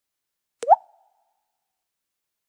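Short intro sound effect for a logo reveal: a click and a quick rising 'plop', a little over half a second in, that fades within half a second.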